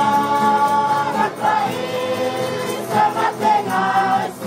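A group of voices singing a worship song together in the Lusi language, unaccompanied, holding a long note at the start and moving into a new phrase about three seconds in.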